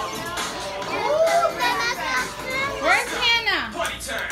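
Young children's high voices chattering and calling out in a classroom, with a long rising-and-falling squeal about three seconds in.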